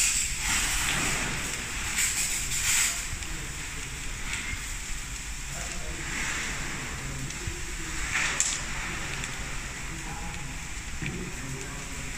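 A fire hose's water jet hissing as it plays onto burning brush, with the fire crackling and sizzling under the water. The spray is loudest in the first few seconds and surges again briefly just after the eighth second.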